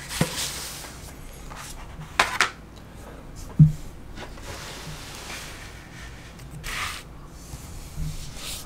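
Comic books and cardboard backing sheets handled on a wooden desk: a few brief rustles and slides of paper, with one dull knock about three and a half seconds in.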